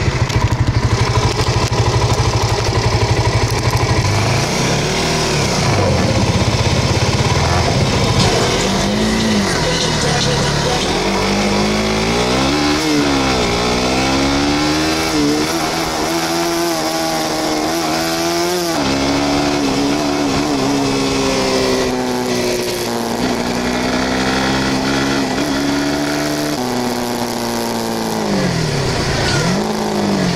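Suzuki motorcycle engine idling, then pulling away and accelerating through the gears: its pitch climbs and drops back at each shift, then holds fairly steady at cruising speed with more rises and falls.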